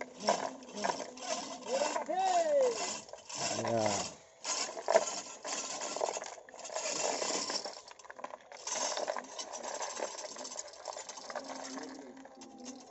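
Manual chain hoists rattling and clinking as their steel hand chains are pulled hand over hand, a dense run of metal clicks while a heavy stone slab is lowered. A short shout about two seconds in.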